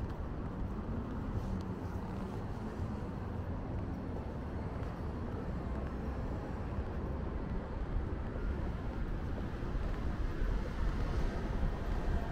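Steady low rumble of city road traffic, with one vehicle's engine hum standing out for a couple of seconds about a second in.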